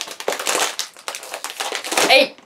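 A plastic potato chip bag of Pizza Potato being pulled open by hand, crinkling and crackling in a dense run of rapid crackles.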